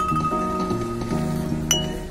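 A tune played on a bottle piano: glass bottles tuned with water, hanging from a frame and struck to give ringing notes, with one sharp glassy clink about 1.7 seconds in.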